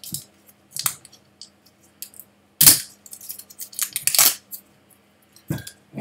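The seal on a whisky bottle's neck being torn and picked off by hand: a few short, sharp crinkling and scraping noises, the loudest about two and a half seconds in.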